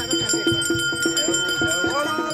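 Bells ringing steadily over rhythmic procession music with quick repeated notes and drum strokes.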